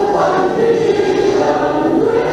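A group of people singing a slow song together in unison, choir-like, with held notes.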